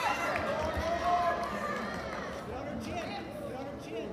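Spectators cheering and calling out after a wrestling takedown, several voices overlapping, the noise dying down into crowd chatter.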